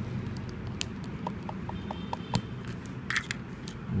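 Small plastic power connectors and wires being pulled apart and handled on a tabletop: a few light, scattered clicks. About a second in comes a quick run of about six short, faint electronic beeps.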